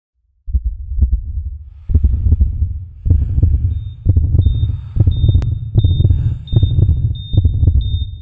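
Heartbeat sound effect: deep, loud thumps that speed up, from about one every second and a half to nearly two a second. About halfway through, a thin high electronic tone joins in and blips in time with each beat.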